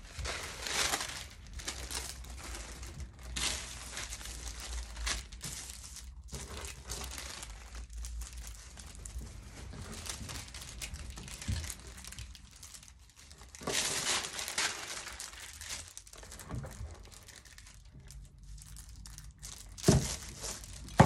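Crisp packets and their fused foil-plastic sheets crinkling as they are lifted, turned and laid out by hand, in irregular rustling bursts, the loudest about a second in and again around fourteen seconds in.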